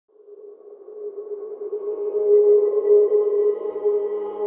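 Intro music sting: a single sustained tone fading in from silence and swelling louder, with higher overtones gradually joining in as it builds.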